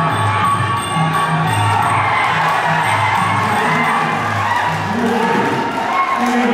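Traditional Kun Khmer ring music playing a repeating low drum pattern under a crowd cheering and shouting as a fighter goes down.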